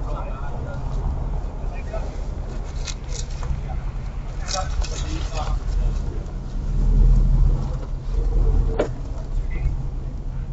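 Steady low hum of idling vehicles, with indistinct distant voices and a few short clicks; the low rumble swells louder about seven seconds in, and a sharp click comes near the end.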